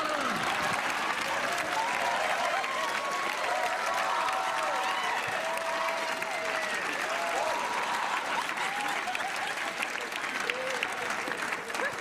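Studio audience applauding, with many voices laughing and whooping over the clapping for about ten seconds, thinning near the end.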